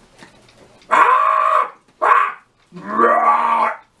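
A puppeteer's voice making animal-like hippo calls for a hippo puppet: three calls, a long one, a short one, then a longer one that starts with a rising pitch.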